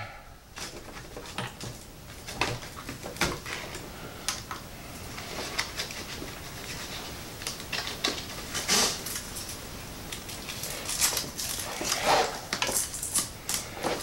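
Scattered light clicks, taps and rustles of hands fitting a 6S battery into an RC truck's plastic battery tray, with a few louder rustles in the second half.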